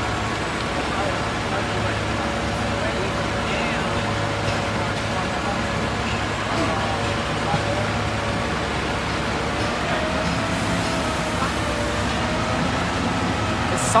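Fire trucks' diesel engines running steadily at the fireground, a continuous drone with no change in pitch.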